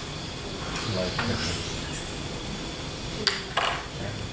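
Room noise in a lecture hall with faint, scattered voices from the audience and a brief click about three seconds in.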